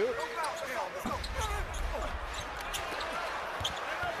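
Basketball game sound on a hardwood court in an arena: the crowd's steady noise, with sneakers squeaking and the ball bouncing as players drive and scramble under the basket. Short high squeaks come mostly in the first second and a half.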